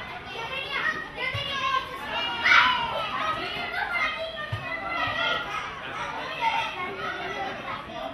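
Children's voices shouting and calling out over one another, with one loud, high shout about two and a half seconds in.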